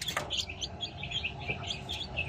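Newly hatched chicken chicks peeping: a steady run of short, high peeps, about five a second, with one brief knock near the start.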